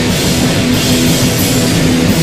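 A heavy rock band playing live: loud, dense music with drums and sustained low notes, steady throughout.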